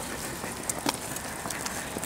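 Road bicycle climbing a paved road: a steady rushing noise with a couple of faint clicks about a second in.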